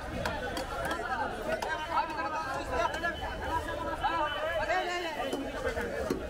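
Chatter of several voices talking over one another, with a few faint sharp clicks near the start.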